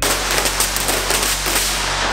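Carbon-fibre vinyl wrap film crackling and rustling as the large sheet is lifted and handled, a loud, dense run of fine crinkling clicks.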